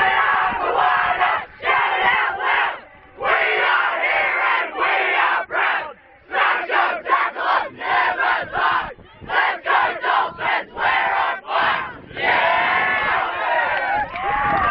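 A team of young teenage boys shouting a chant together in a huddle, in loud group bursts. Through the middle the shouts come quickly and evenly, about three a second, and near the end they hold one longer shout.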